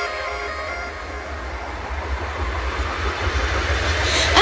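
Quiet breakdown in a hardwave electronic track: a noise wash over a low bass rumble, slowly building in loudness.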